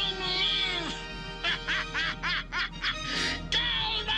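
A cartoon robot villain's electronically processed voice cackling maniacally, with a run of quick 'ha' bursts in the middle and a drawn-out laugh near the end. A background music score runs under it.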